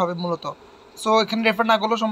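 A person's voice speaking: a drawn-out voiced sound at the start, a short pause about half a second in, then more talking.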